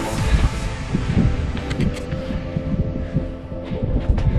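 Background music with steady held notes, over irregular low thumps and rumble.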